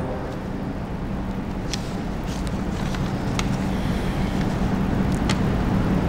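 Steady background noise: a low hum under a hiss, with a few faint clicks.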